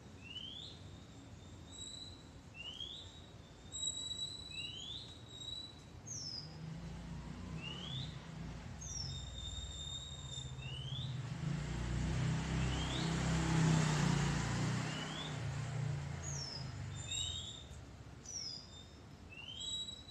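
Small birds chirping repeatedly in short upward-sweeping calls about once a second, with a few steady whistled notes. A low rumble with hiss swells and fades through the middle and is the loudest thing.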